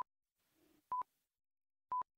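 Quiz countdown timer beeping: a short, single-pitch high beep once a second, three times.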